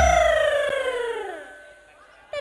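Live campursari band music: a loud low drum beat, then a long note that slides downward in pitch and fades away over about a second and a half.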